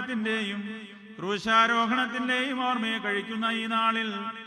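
A man chanting Syriac Orthodox liturgy in a slow, melismatic line over a steady held drone note. There is a brief pause about a second in, before the next phrase begins.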